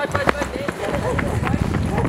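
A quick, irregular run of thumps and scuffs, like running footsteps, with a voice mixed in.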